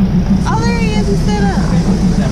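Passenger train running, heard from inside a carriage with open windows: a steady low rumble with a fast pulsing beat. A person's voice calls out over it from about half a second in.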